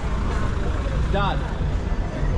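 Street sound of cars passing close on a cobblestone street, a low steady rumble, with people's voices around. A short, sliding high-pitched call or squeal comes a little over a second in.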